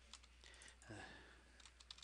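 Faint, scattered keystrokes on a computer keyboard as a value is typed in.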